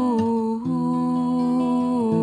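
A woman singing a long wordless 'ooh' in held notes, stepping down in pitch about a quarter second in, over guitar accompaniment.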